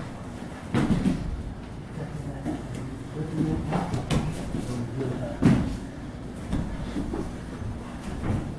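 Bare feet shuffling and bodies thumping on grappling mats during a jiu-jitsu exchange: a string of irregular dull thumps, the loudest about a second in and again about five and a half seconds in.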